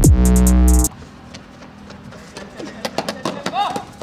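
A loud electronic logo sting with a bass hit that sweeps down in pitch, cutting off about a second in. After it come quieter voices calling out, with a few sharp taps.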